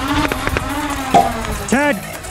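A person shouting in one long drawn-out call, with a few sharp clicks or pops, the loudest about halfway through, and a short rising-and-falling shout near the end.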